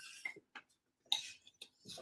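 A few faint, scattered clicks and light taps against a quiet room, the clearest a little after a second in.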